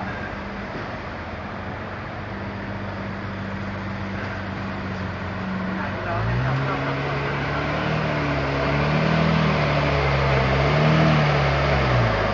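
A sports car engine running at idle with a steady low hum. About six seconds in it gets louder and deeper, and its note rises and falls in light blips of revs.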